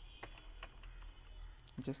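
A few separate keystrokes on a computer keyboard, unevenly spaced, as code is typed in.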